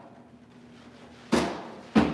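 Two sharp knocks about two-thirds of a second apart, the second the louder: a training snowboard popping off the floor and landing hard on a low indoor jib box as a 270 on is thrown.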